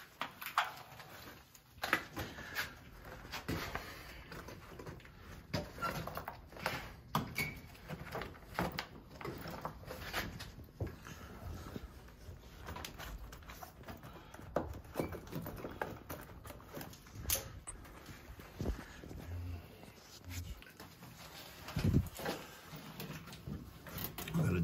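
Scattered light clicks, knocks and rustles of hands and tools being handled, irregular and with no steady machine sound; a louder knock comes near the end.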